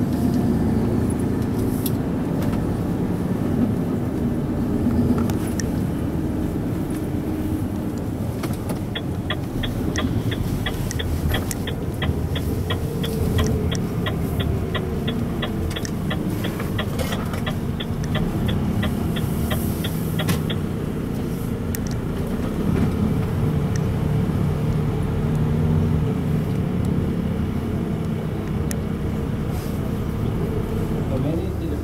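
Inside the cab of a Renault Trucks T 460 tractor on the move: the steady hum of its diesel engine mixed with road noise. Through the middle, for about ten seconds, a light ticking runs at roughly three ticks a second.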